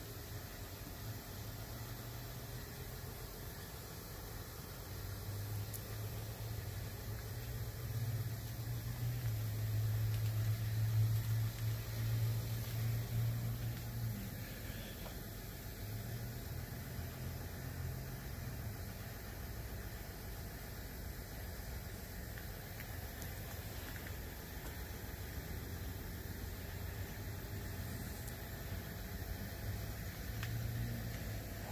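A low engine hum over a faint steady hiss. It swells to its loudest in the middle and then eases back.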